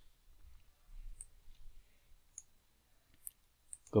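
A few faint, sharp computer mouse clicks, spread irregularly over the few seconds, over low room noise.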